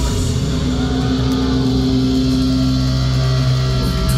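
Live rock band's electric guitars and bass holding a steady, low, ringing chord, with few drum hits.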